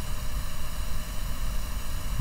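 Steady background hiss over a low hum, an even noise with no distinct event in it.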